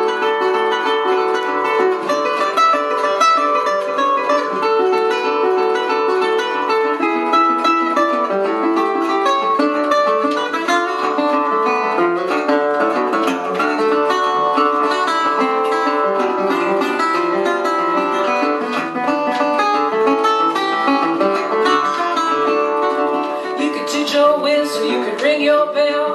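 Metal-bodied resonator guitar fingerpicked solo, a busy blues-ragtime instrumental part with a rhythm line and melody notes, growing a little louder near the end.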